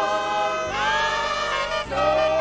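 Women's choir singing a gospel chorus into microphones, one note held for about a second just past halfway.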